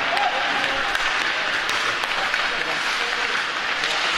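Ice hockey practice in an echoing indoor rink: a steady hiss of skates on the ice, scattered sharp clacks of sticks and puck, and players' voices in the background.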